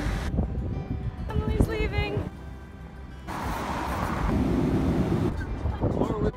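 A rapid string of one-second sound snippets cut abruptly one after another, with background music underneath. The snippets hold people's voices and laughter and short stretches of wind or traffic noise.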